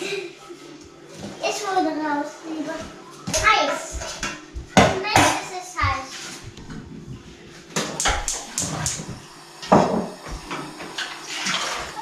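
Kitchen clatter: a scattering of sharp knocks and clinks of a knife, cutting board and metal tins on a wooden counter, with a quick run of knocks near the end. A child's voice chatters in the background.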